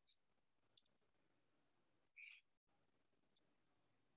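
Near silence with faint room tone, broken by a few faint short clicks: a quick pair just under a second in and another soft one a little after two seconds.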